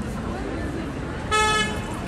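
A short vehicle horn toot, a single steady note lasting under half a second, a little past the middle, over busy street noise of traffic and distant voices.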